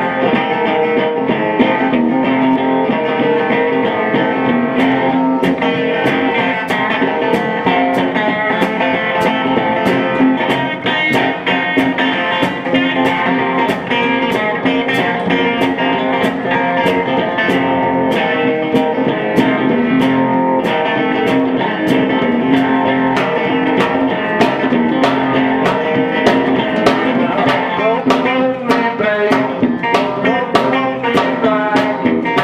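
Instrumental blues on an electric guitar through an amplifier, with a drum kit keeping a steady beat.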